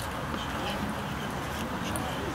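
Indistinct, low chatter of nearby spectators over steady outdoor background noise.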